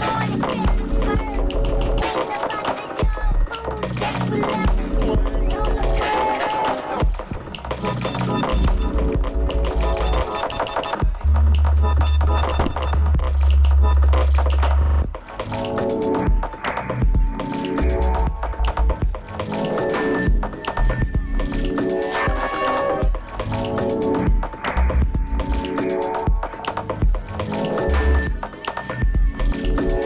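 Electronic dance music played live, with heavy sub-bass swells that come and go and dense, glitchy clicks. From about halfway in, held synth tones sound over it.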